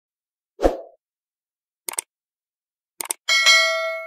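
Subscribe-button animation sound effects: a soft pop, two quick mouse clicks (each a short double tick), then a notification-bell ding with several ringing tones that fades out slowly.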